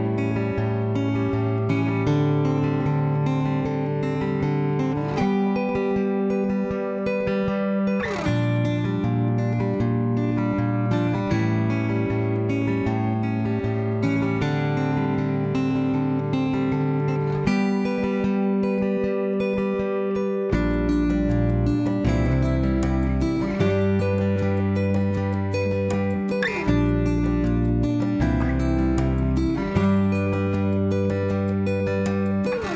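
Background music led by strummed acoustic guitar, moving through steady chord changes; deeper bass notes come in about two-thirds of the way through.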